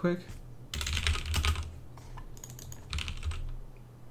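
Typing on a computer keyboard in two short bursts of keystrokes, one about a second in and a shorter one near three seconds in.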